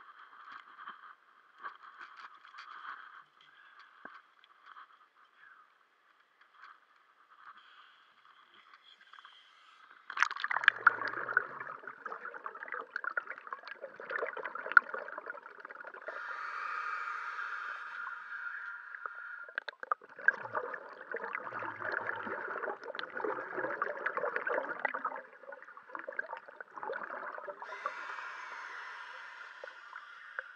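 Underwater bubbling and gurgling of a scuba diver's breathing through the regulator. It is faint at first and starts suddenly and loudly about ten seconds in, coming in stretches with short pauses.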